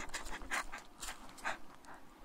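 A woman's breathy panting: short, quick breaths, some of them soft breathless laughs, as she catches her breath.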